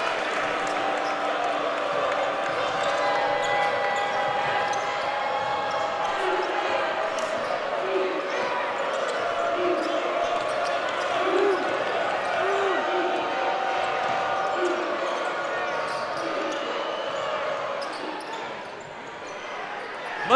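Basketball dribbled on a hardwood court during live play, over a steady murmur of the arena crowd that dips briefly near the end.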